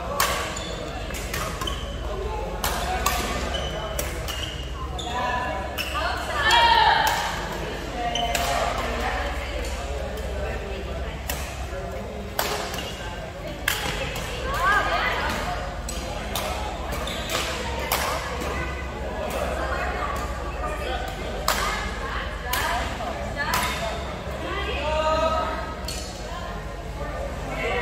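Badminton rackets striking a shuttlecock back and forth in a large indoor hall: a string of sharp cracks through the rally, with voices calling out between shots.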